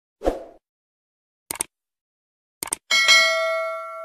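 Subscribe-button animation sound effects: a short thump, two quick double clicks about a second apart, then a bell ding that rings out and fades.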